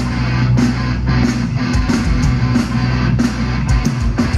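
Live rock band playing loud through a festival sound system, heard from the crowd: electric guitars with a steady pounding drum beat, an instrumental passage without vocals.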